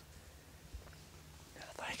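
A man whispering, starting about a second and a half in, after a quiet stretch with only a faint low hum and a small tick.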